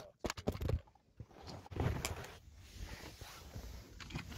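A phone being picked up and handled while it records: several quick knocks against the microphone in the first second, then rubbing and fumbling noise with small bumps.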